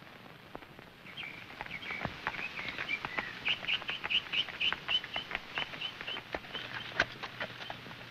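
Songbirds chirping in a run of short repeated notes that starts about a second in, over scattered sharp clip-clops from the hooves of horses pulling a buggy, with one louder knock near the end.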